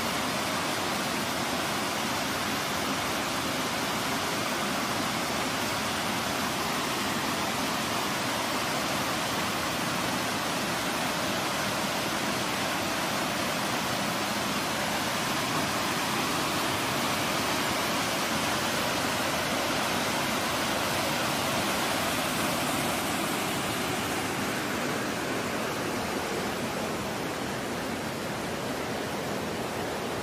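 Small stepped waterfall pouring over rock ledges into a pool: a steady, unbroken rush of falling water. Near the end the hiss softens a little.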